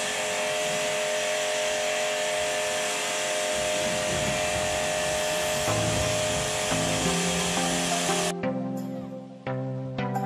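Pressure washer running: a steady motor tone over the loud hiss of the water jet spraying a car, cutting off suddenly about eight seconds in. Background music comes in during the second half.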